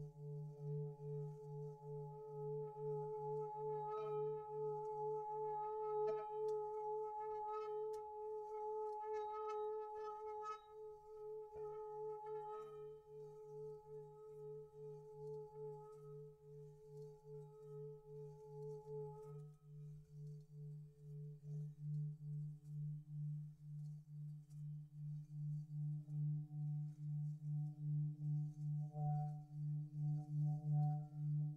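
Tibetan singing bowls ringing in long overlapping tones, the deepest one beating in a slow, even pulse. Lighter strikes about every two seconds add higher ringing between about four and thirteen seconds in. The middle tones die away a little after halfway and fresh ones take over.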